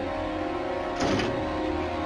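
Tense horror-film background music with sustained tones. About a second in, a short harsh burst as a square lid is thrown open.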